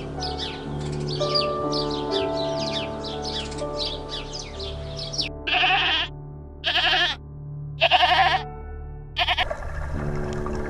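A goat bleating four times, about a second apart, over soft ambient music. Before the bleats there is a fast run of short bird chirps.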